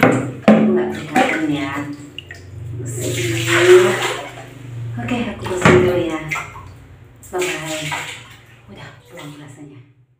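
Water splashing and pouring in bursts in a small tiled bathroom, with a woman's voice talking over it.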